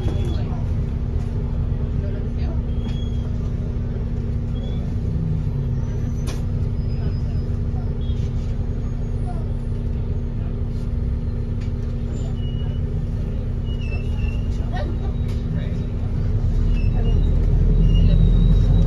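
Cabin noise inside a New Routemaster hybrid double-decker bus on the move: a steady drivetrain hum with a constant tone over a low rumble, and faint passenger voices. The low rumble grows louder near the end.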